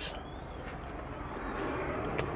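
Faint steady background noise with a low rumble, growing slightly louder; no distinct event.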